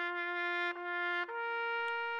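A brass horn sound effect playing held, flat notes: the same note twice with a short break about three-quarters of a second in, then stepping up to a higher note about a second and a quarter in. It is a comic stand-in for the bad sound of a newly built guitar.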